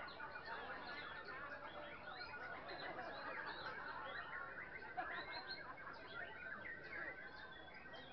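Many caged songbirds singing at once, a dense overlapping chorus of chirps, trills and whistled phrases from competition birds hung side by side.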